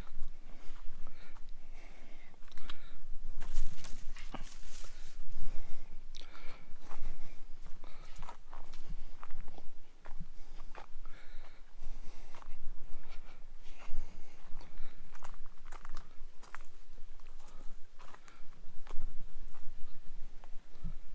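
Footsteps crunching irregularly over dry palm fronds, twigs and cracked dirt, with rustling of dry brush.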